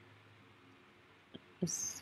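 Faint room tone with a low steady hum, and a single small click about a second and a third in. Near the end there is a brief voice sound and a short hiss as speech begins again.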